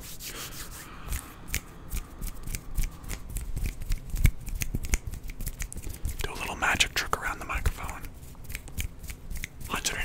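Hand sounds close to a microphone: a steady run of quick finger taps, flicks and light rubs, with a longer, denser rustling stretch about six seconds in.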